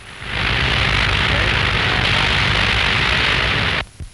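Oil well fire burning: a loud, steady rushing noise with a low rumble under it that cuts off suddenly near the end.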